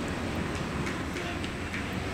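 Steady outdoor background noise with a low rumble, faint distant voices and a few faint ticks.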